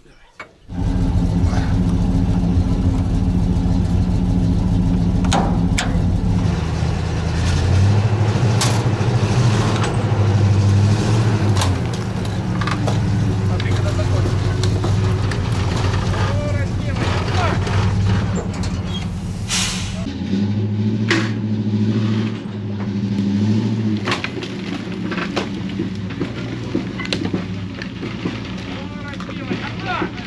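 Truck engine running hard under load, pulling a dead crawler tractor by tow slings hooked to its tracks, with scattered metallic knocks. The engine note strengthens about eight seconds in.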